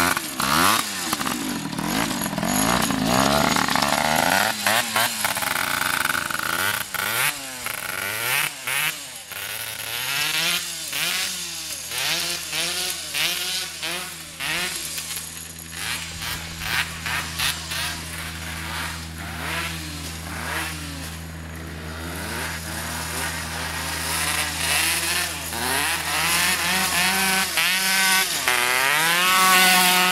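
Small two-stroke go-kart engine, a Suzuki PV bored out to 74cc, revving up and down as the kart drives. Its note holds steady through the middle and climbs again near the end.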